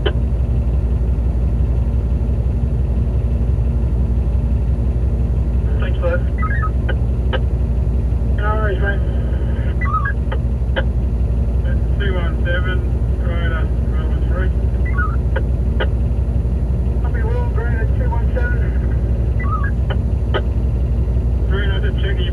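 Cat D11T dozer's diesel engine idling, a steady low drone heard from inside the cab. From about six seconds in, two-way radio chatter and squelch clicks come and go over it.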